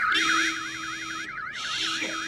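Car alarm going off with a fast warbling wail that sweeps up and down several times a second, set off as someone breaks into the car.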